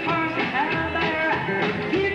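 Live 1950s-style rockabilly song: a band with upright bass, electric guitar and drums keeps a steady beat while a woman sings held notes.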